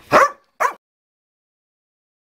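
A dog barks twice in quick succession, two short sharp barks within the first second, then the sound cuts out abruptly.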